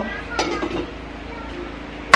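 A brief wordless vocal sound from a woman, then a faint steady low hum of background noise.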